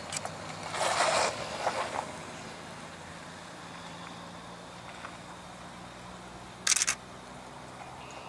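Camera shutter firing: a short run of clicks about a second in and another short burst near the end, over a faint steady low hum.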